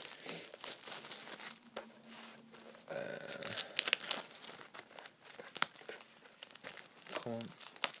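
Plastic shrink-wrap being torn and peeled off a Blu-ray steelbook case, crinkling and crackling irregularly as it is pulled and crumpled in the hand.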